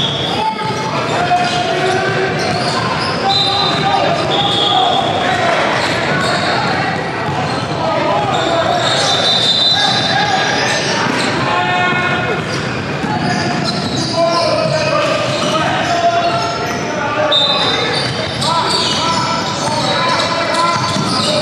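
Basketball game in a gymnasium: a ball bouncing on the hardwood court amid voices of players and spectators, echoing in the large hall, with several brief high-pitched squeaks or tones.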